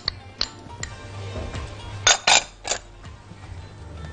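Glass bowl and utensil clinking against a metal saucepan as butter is tipped into warm milk and cream. A few light clicks come first, then a cluster of sharper clinks about two seconds in and one more shortly after.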